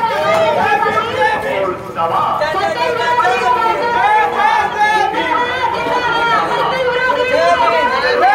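Crowd of many voices talking and shouting at once, loud and continuous.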